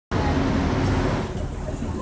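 Road traffic noise, strongest in the first second or so and then easing off.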